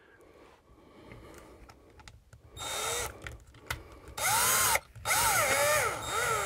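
Cordless drill driving a screw for a wall-fan bracket, run in three spurts in the second half, the longest near the end. The motor's pitch rises and falls within each spurt.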